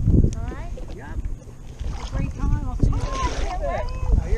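Low rumble of wind and body movement on a chest-mounted GoPro's microphone, with indistinct voices talking throughout.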